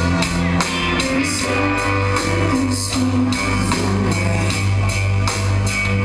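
Live rock band playing an instrumental passage: electric guitars and bass over a drum kit keeping a steady beat.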